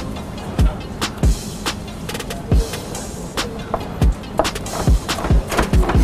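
Chef's knife chopping green bell pepper on a plastic cutting board: a series of uneven knocks about every half second to a second, over background music.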